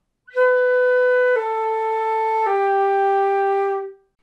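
Flute playing three notes in one unbroken breath, stepping down B, A, G, each held a little over a second.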